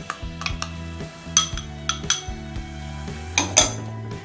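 A spoon clicking and scraping against a bowl and a steel wok as shredded carrots are tipped in, with several sharp knocks, the loudest near the end. Soft background music plays underneath.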